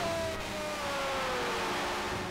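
Arena crowd cheering, with a goal horn sounding for the home team's goal; the horn's single long tone sags slowly in pitch.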